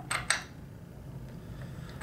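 Two light metallic clicks near the start from a 19 mm spark plug socket wrench turning and seating against a chainsaw's new spark plug as it is tightened.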